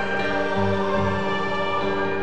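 Church choir singing slow, held chords during the Mass, the notes shifting about half a second in.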